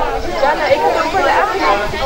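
A group of children chattering, many voices talking over one another.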